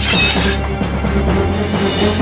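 Dramatic cartoon soundtrack music, with a short shattering crash sound effect at the very start that rings out and fades within the first second.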